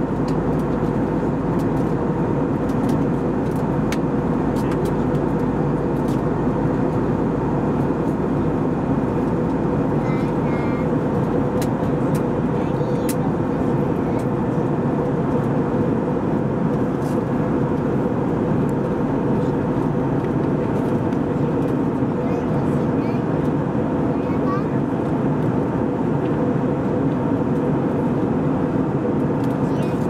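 Steady cabin noise of an Airbus A320-200 in flight, heard from inside the cabin beside the wing-mounted jet engine: an even roar with a constant low hum.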